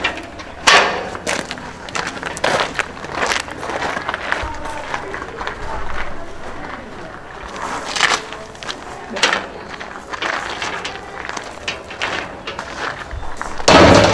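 Wrought-iron gate being opened and handled, clanking, with footsteps on gravel and irregular knocks and clatter. The loudest bangs come about a second in and near the end.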